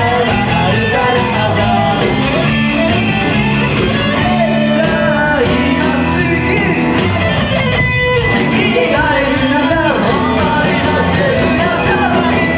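A live rock band playing loudly: two electric guitars, electric bass and a drum kit, with singing.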